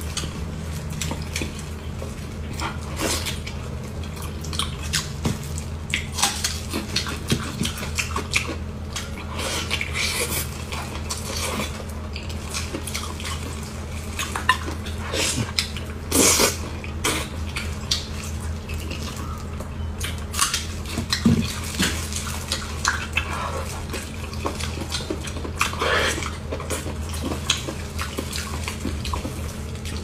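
Close-miked wet chewing and lip-smacking of gelatinous, sauce-covered braised pork, with sticky squelches as gloved fingers tear the meat. The small irregular clicks and smacks sit over a steady low hum.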